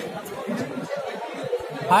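Chatter of several people talking at once in a large hall. A man's voice calls out loudly at the very end.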